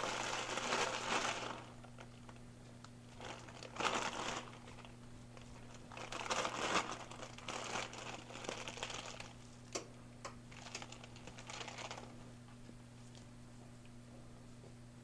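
Clear plastic zip-top bag of shredded Swiss cheese crinkling in several irregular bursts as it is shaken and squeezed out. A steady low hum runs underneath.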